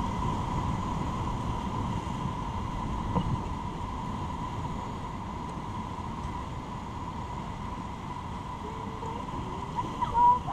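Rushing whitewater of a river rapid around an inflatable raft, a steady churning noise that slowly eases as the raft runs out into calmer water.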